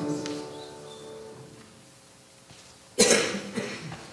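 The last held note of a congregational hymn dies away in the first second or so. About three seconds in comes a sudden loud cough, the loudest sound here, followed by a shorter cough or two.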